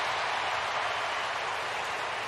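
Ballpark crowd cheering and applauding a running catch in the outfield, a steady noise with no single sound standing out.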